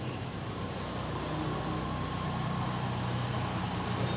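A motor vehicle's engine running nearby: a low, steady hum that grows slightly louder.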